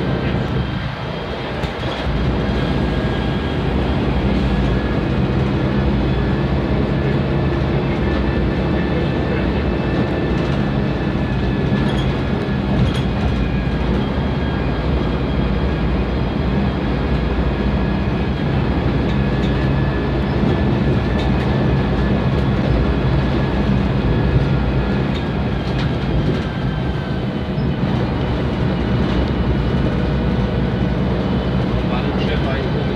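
Volvo B10M bus's horizontal six-cylinder diesel engine running loudly and steadily under way, dipping briefly about a second in before carrying on at an even pitch.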